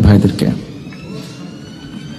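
A man's speech stops about half a second in, leaving a pause with room noise and a faint, slowly rising whine.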